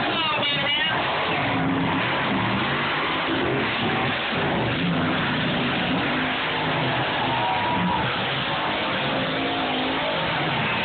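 Monster truck engines revving loud, the pitch rising and falling as the trucks accelerate and jump.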